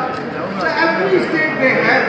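Speech: voices talking in a room.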